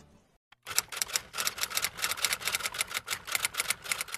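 Rapid typewriter key clicks, about eight to ten a second, starting just over half a second in and running to just past the end. This is a typing sound effect as the title text of a countdown card appears.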